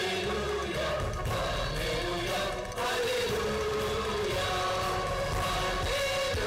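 Church music: a hymn sung by voices over steady instrumental accompaniment.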